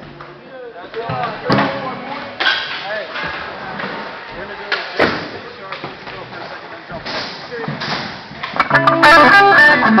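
Electric guitar played through an amplifier: a loud chord of several steady notes rings out near the end. Before it, voices chatter in the background, broken by a few sharp knocks.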